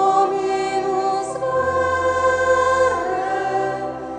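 Church choir singing a hymn in slow, held chords, over low sustained bass notes; the chord changes twice.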